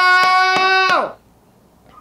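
A voice holding one loud, steady high note that slides off and stops about a second in, with a few sharp clicks over it.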